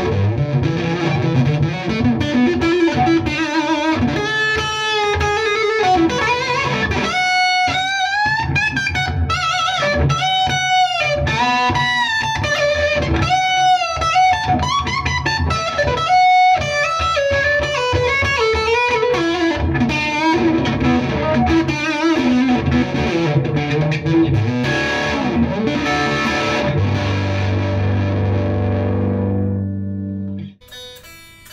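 Ibanez ICHI10 headless electric guitar, amplified, played in fast melodic phrases with bent notes. Near the end it settles on a held chord that rings out.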